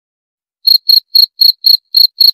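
A cricket chirping in an even rhythm of about four short, high-pitched chirps a second, starting just over half a second in.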